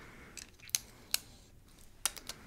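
A few short, sharp clicks from a small object and papers being handled, two louder ones close together around the middle.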